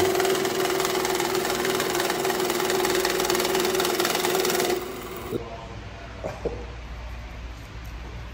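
Cummins JetScan currency counter running a stack of banknotes through: a fast, even rattle of bills over a steady hum, which stops abruptly just under five seconds in. A few light clicks follow.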